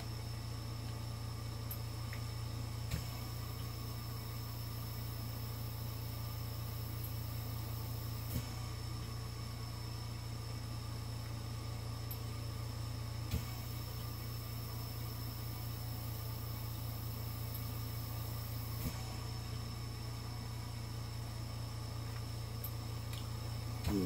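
Steady low electrical hum with a faint hiss and a thin high whine underneath, broken by four faint short clicks about five seconds apart.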